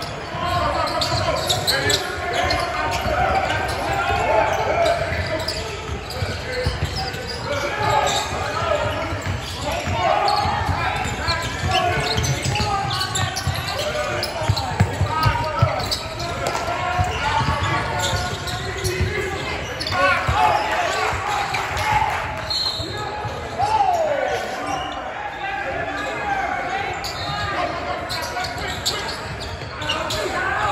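Basketball dribbled on a hardwood gym floor, with indistinct shouting and talk from players, coaches and spectators echoing around a large hall.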